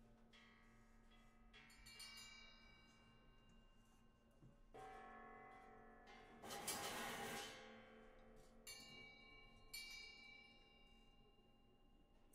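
Quiet, sparse improvised metal percussion: bell-like struck metal tones ring out with long, slow-fading decays, a few strikes a couple of seconds apart. About six and a half seconds in there is a louder, noisier wash that lasts about a second.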